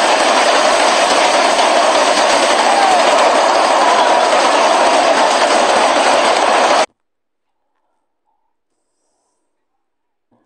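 Heavy rain pouring down in a storm: a loud, steady rushing hiss that cuts off abruptly about seven seconds in.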